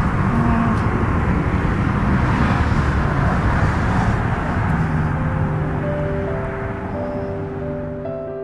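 Steady drone of freeway traffic. It fades over the second half as background music with held notes comes in about five seconds in.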